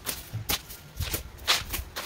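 Footsteps scuffing on dry, dusty ground: irregular short strokes, about two or three a second.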